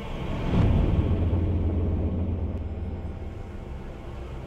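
A deep low rumble swells up about half a second in and slowly fades, typical of trailer sound design.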